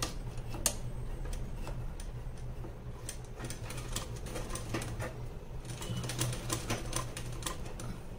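Sewing machine stitching a zip onto a fabric blouse: rapid, uneven runs of needle clicks over a steady low hum.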